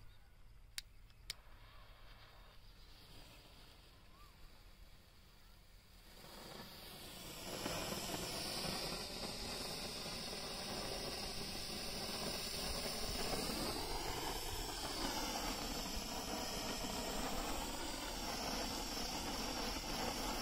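Hand-held Diwali 'pencil' firework burning with a steady hiss as it throws a jet of sparks; the hiss starts about six seconds in and builds within a couple of seconds.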